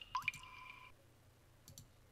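Two water-drop plinks, short sounds gliding quickly upward in pitch, just after the start, with a short ringing tone after them, followed by a couple of sharp clicks later on.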